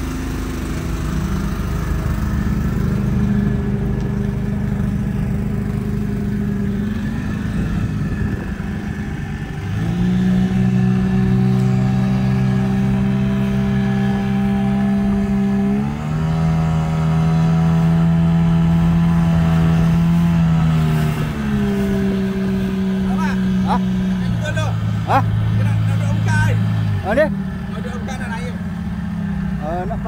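Small boat's outboard motor running under way, its engine speed stepping up and down several times.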